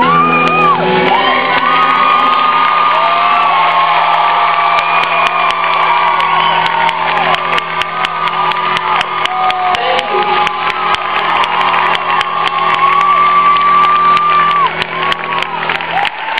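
A concert crowd in a large hall cheering, whooping and clapping as a song ends, over a steady low chord the band holds until near the end.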